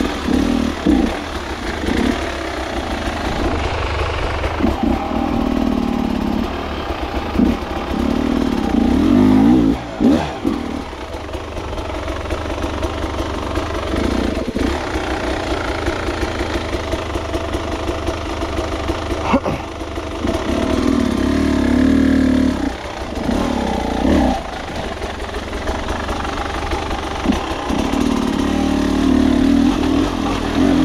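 Beta enduro motorcycle engine running at low revs, blipped up in repeated bursts of throttle as the bike is worked slowly over rocks, with a few sharp knocks in between.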